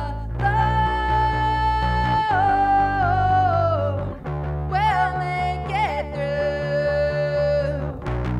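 A woman singing long held notes with vibrato over her own electric bass playing. There are two sung phrases, with a short break a little after the midpoint.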